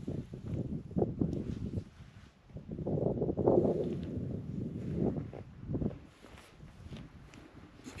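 Footsteps and rustling of a hiker walking through rough moorland grass, uneven and louder about three seconds in.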